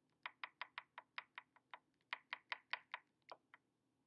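Quick, light taps on a hard surface, about five or six a second, in two runs with a short break near the middle, fading at the end.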